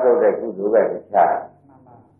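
A monk's voice preaching in Burmese in a few short phrases, breaking off into a pause about a second and a half in.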